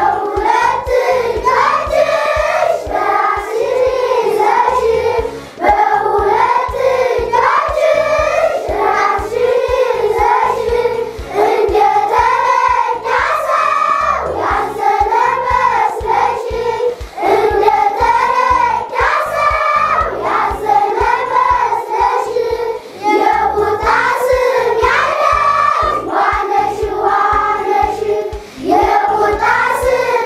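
A class of young children singing a song together in unison, phrase after phrase.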